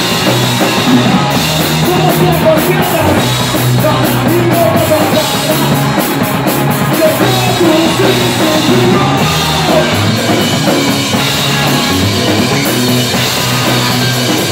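Live punk rock band playing: electric guitar, electric bass and drum kit.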